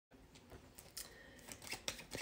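Faint handling of a deck of cards: a few light clicks and rustles as the deck is tapped on the table and lifted.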